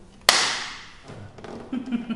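A high five: two people's palms slapping together once, a sharp smack with a short ring of the room after it.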